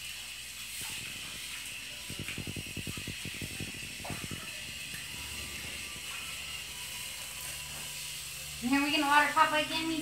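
Garden hose spraying water with a steady hiss. About two seconds in there is a rapid low fluttering for a couple of seconds, and near the end a loud voice.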